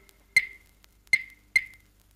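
Three sharp, ringing clave strikes, a last lone tap of Latin percussion as a rumba record ends.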